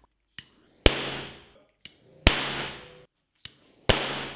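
Oxyhydrogen gas from water electrolysis igniting in a bowl of water: three sharp, loud bangs about a second and a half apart, each preceded by a faint click and followed by a short fading tail.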